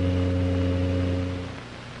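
A steady low hum with several overtones, dying away in the last half second.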